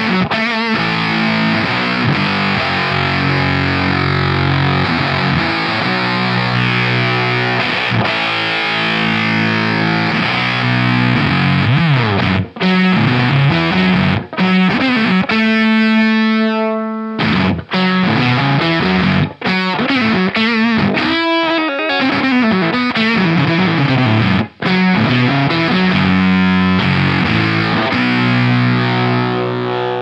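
Electric guitar played through a Screwed Circuitz Irvine's Fuzz pedal into a Suhr SL68 amp set for a classic crunch: loud, fuzzy distorted chords and riffs. About halfway through, one note rings on alone for a couple of seconds, cuts off, and the riffing starts again.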